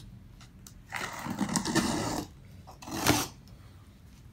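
Scissors slitting the packing tape on a cardboard box: a long rasping cut about a second in, then a shorter, sharper rip near the end.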